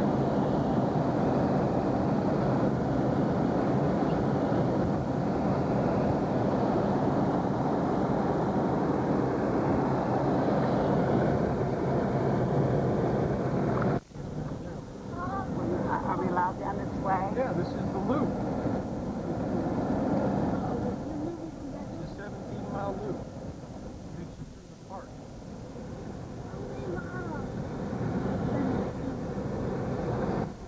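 Cabin noise of a vehicle driving on a dirt road: a steady, loud rumble of engine, tyres and wind that cuts off suddenly about fourteen seconds in. After that comes a quieter, uneven rumble with faint voices.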